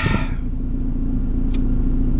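Steady low rumble of a vehicle engine heard from inside the cabin, with one brief faint click about one and a half seconds in.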